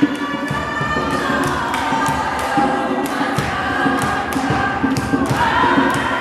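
A group of young people singing together, with a steady beat of sharp hits about twice a second, typical of hand-clapping and stamping to a gospel song.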